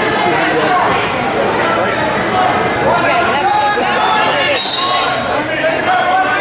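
Crowd of spectators in a gymnasium talking and calling out over one another, with several voices overlapping throughout.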